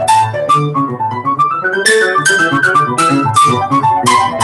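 Grand piano played solo: quick runs of notes over a sustained bass, with louder chords struck from about two seconds in.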